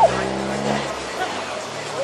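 Blue-and-gold macaw giving a short loud call right at the start, followed by a few faint short calls, over the steady hum of a vehicle engine that fades out about a second in.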